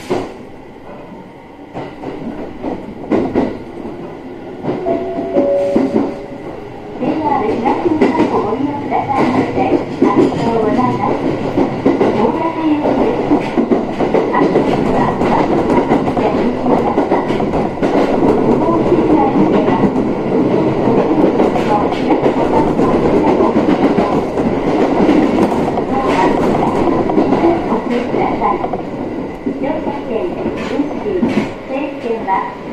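JR 701-series electric train running, heard from inside the car: quieter at first with a faint rising whine, then from about seven seconds in a loud, steady rumble of running noise that holds to the end.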